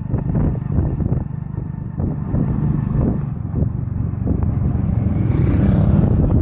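A motorcycle engine running steadily close by, with rattling clicks and wind noise over it; the sound grows a little louder near the end as traffic passes.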